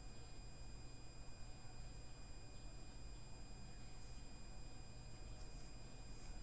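Faint steady high-pitched electronic whine in several even tones over a low hum: electrical background noise in the stream's audio.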